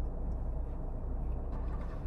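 Steady low hum and faint background rumble inside a car cabin.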